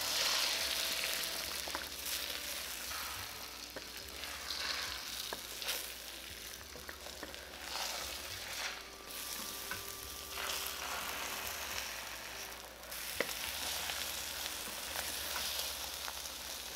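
Beaten eggs sizzling in hot oil in a wok as a wooden spatula stirs and scrapes them, with scattered light clicks of the spatula against the pan. The sizzle is loudest at first and settles lower as the eggs set toward half cooked.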